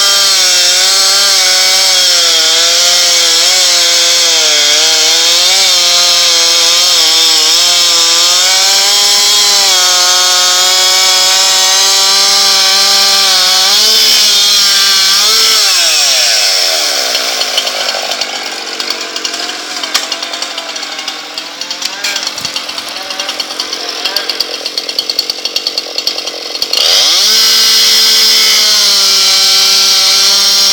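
Gas chainsaw cutting into an ash trunk at full throttle, its pitch wavering under load. About halfway it drops to a fast, even idle for about ten seconds, then revs back up to full speed near the end.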